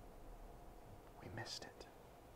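Near silence: room tone, with a brief faint whispered voice sound from the man about one and a half seconds in.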